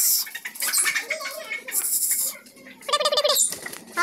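Chickens being shooed across a concrete floor: scuffling and scraping noises, with a short loud squawk about three seconds in.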